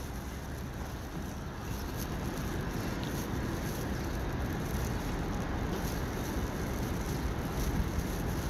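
City street traffic: a steady, even rumble of vehicles on the avenue, growing a little louder over the first couple of seconds.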